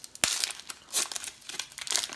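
Plastic wrapper of a baseball card pack being torn open and peeled back by hand, crinkling and crackling in irregular bursts, with one sharp crackle near the start.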